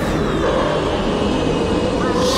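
A cartoon gorilla's rough, rumbling growl, a steady, grainy vocal sound effect with no clear pitch.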